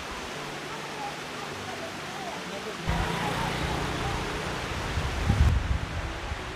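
Steady outdoor hiss with faint voices, then uneven wind rumble on the microphone from about halfway through, loudest shortly before the end.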